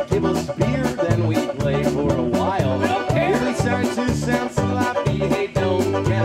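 Cleveland-style polka band playing an instrumental passage: button accordion, banjo, saxophones and drum kit over a brisk, steady two-beat rhythm with an alternating low bass line.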